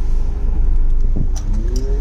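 Car engine and road rumble heard from inside a car's cabin, with a short knock about a second in and an engine note rising near the end as the car gathers speed.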